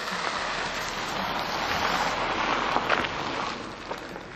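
A car driving past close by, its tyre and engine noise swelling and then fading near the end.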